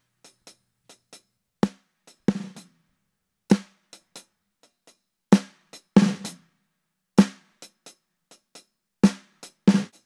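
A snare drum sample plays a groove of about eight irregularly spaced hits, with quieter ticks between them. It runs through an FMR RNC1773 hardware compressor set to a 25:1 ratio with a low threshold and medium attack and release, so the compressor is working really, really hard and the snare is heavily squashed.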